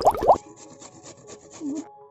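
A firm vegetable being grated on a stainless steel box grater: quick, even rasping strokes, roughly seven a second, that stop shortly before the end.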